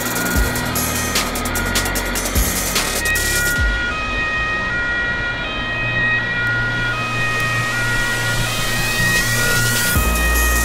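Two-tone emergency siren on model fire engines, alternating between a high and a low note, over background music with a beat.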